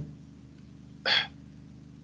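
A man's short, sharp intake of breath about a second in, between phrases of speech, over a faint steady hum.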